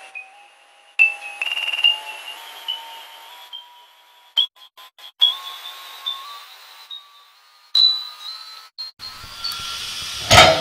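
Electronic sound-design tones: pairs of pure beeping tones stepping slowly upward in pitch, note by note, cut off abruptly to silence several times around the middle and just before the end. Near the end a low noise comes in beneath them.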